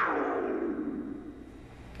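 A sound effect in a television commercial: one sweep that falls in pitch and fades away over about a second and a half.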